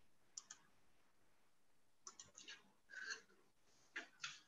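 Faint clicks on a computer: a quick double click about half a second in, then a run of clicks from about two seconds in, and one more near the end.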